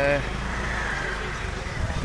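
Steady background hubbub of a busy street market, a low rumble of traffic mixed with distant crowd noise, after a man's voice trails off in the first moment.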